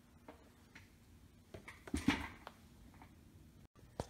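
A few faint clicks and light knocks of a small wooden player-piano pneumatic, bound with a rubber band, being handled over a workbench, the loudest cluster about two seconds in.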